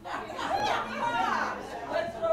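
Several people talking at once in a hall: overlapping, indistinct chatter.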